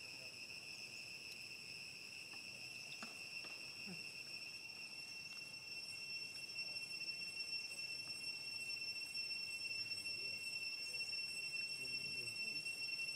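Insects droning steadily at one high pitch, growing louder about halfway through.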